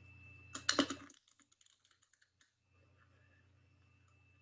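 A deck of playing cards being riffle-shuffled: a quick flurry of clicks about half a second in, then faint scattered card clicks. A steady low electrical hum runs underneath, dropping out for a moment after the flurry.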